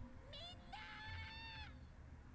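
A young girl's high voice from the anime's soundtrack, faint, calling "Everyone!" in one long drawn-out call that rises in pitch and then holds.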